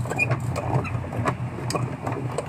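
Wooden honeycomb frames knocking and clicking against a plastic honey extractor's basket as they are fitted in, over a steady low mechanical hum.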